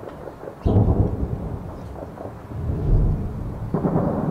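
Distant heavy gunfire echoing across the city. A sudden boom comes about half a second in and rolls on in a long rumbling echo, with a few sharper reports after it. The rumble swells again near three seconds, and another sudden boom comes near the end.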